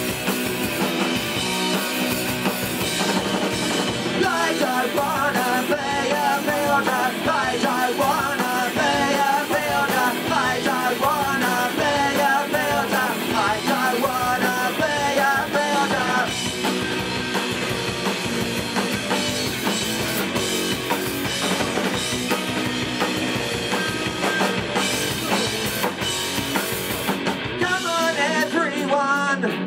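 Punk rock band playing live: drums, distorted electric guitars and bass in a steady, loud mix. A wavering melody line rides over the band from about four seconds in to about sixteen seconds.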